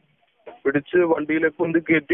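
A man talking, starting about half a second in after a short pause; only speech is heard.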